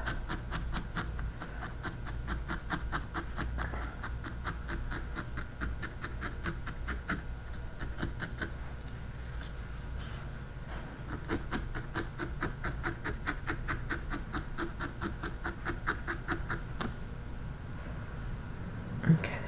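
Barbed felting needle stabbing repeatedly into wool on a small needle-felted figure: a quick run of soft ticks, about four a second, thinning out for a few seconds midway.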